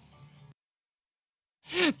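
Isolated male lead vocal with no backing track: a held sung note has just ended and fades out, leaving about a second of dead silence. Near the end the voice comes back in with a rising, bending sung ad-lib.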